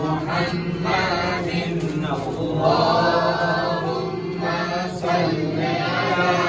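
Several men's voices chanting a devotional song together in long, held melodic phrases.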